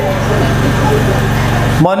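A loud, steady low hum with a hiss over it, cutting off abruptly as a man's voice comes back near the end.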